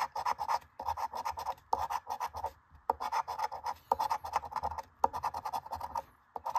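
A metal coin scraping the latex coating off a lottery scratch-off ticket in runs of quick back-and-forth strokes, with a few brief pauses.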